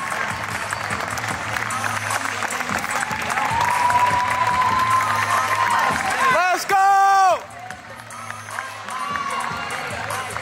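Audience cheering and applauding, swelling in the middle, with a long held cry over the crowd and a loud shout close by just before seven seconds in. Music plays faintly underneath.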